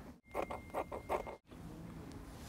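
Scissors snipping through cloth: a quick run of about five or six cuts, with a faint steady high whine beneath them.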